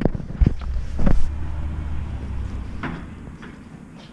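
A few sharp knocks and handling thumps as items are picked up and moved on a folding table, over a low rumble that fades away by about three seconds in.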